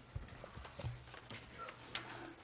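Faint, irregular knocks and thumps, about five in two seconds, as people shift at the desks and podium of a microphone-equipped chamber, over a faint steady low hum.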